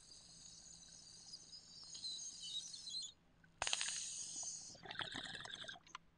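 Faint hissing of a lighter flame and smoke being drawn through a glass pipe, in two pulls with a sharp click between them about three and a half seconds in, ending in a rougher, rattling draw.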